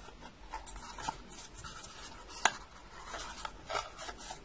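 Faint rustling and small clicks of a paper cup, plastic drinking straws and a wooden skewer being handled and threaded together, with one sharper click about two and a half seconds in.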